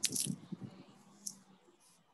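A sharp click followed by a few faint rustling noises in the first half second, fading to a faint low hum and near quiet.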